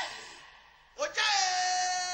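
A voice: a short falling cry that fades out, then from about a second in a long, steady, high-pitched held note.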